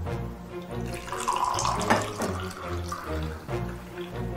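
Tea poured from a glass pitcher into drinking glasses, a splashing pour starting about a second in, over background music.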